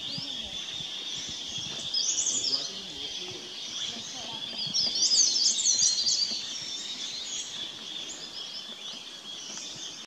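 High-pitched chirping and twittering of small forest birds, in two louder bursts about two and five seconds in, over a steady high-pitched background drone.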